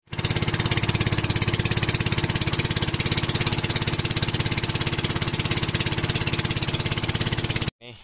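Small boat engine running steadily at speed, with a fast, even pulsing beat; it cuts off abruptly near the end.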